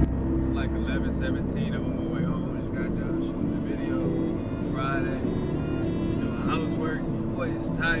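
A man's voice, words not made out, over the steady low rumble of a car cabin, with music playing underneath.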